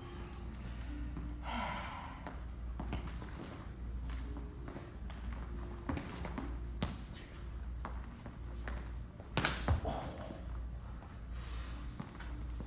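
Knife-sparring movement on a wooden floor: scattered footsteps, shoe scuffs and taps, with heavy breathing from the exertion. A sharp, louder burst comes about nine and a half seconds in, over a steady low room hum.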